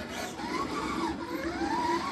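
Redcat Gen 8 V2 scale RC crawler's electric motor and drivetrain whining as it drives. The pitch dips about halfway through, then climbs and holds. The constant whine is a noisy characteristic of this truck rather than a fault.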